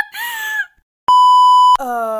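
A person's laughing voice trails off, then a steady electronic beep sounds for well under a second, the loudest thing here. It is followed straight away by a long groan that slides down in pitch.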